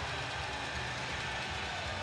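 Hockey arena crowd noise, a steady roar of the home crowd just after a goal.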